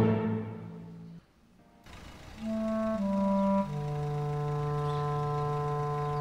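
Dramatic background score: a last low hit at the very start dies away into a brief hush. About two and a half seconds in, slow held chords from wind instruments begin and shift a few times.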